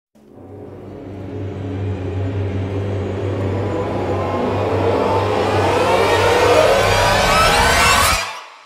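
Intro sound effect: a low steady drone with many rising pitch sweeps swelling louder through the second half, cut off suddenly at the end.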